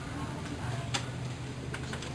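A steady low hum with light clicks over it: one sharp click about a second in, then two fainter clicks close together near the end.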